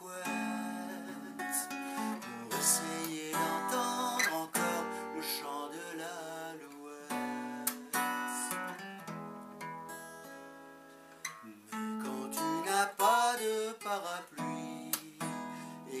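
Acoustic guitar strummed and picked in a slow chanson ballad, with a man's voice singing over it in places.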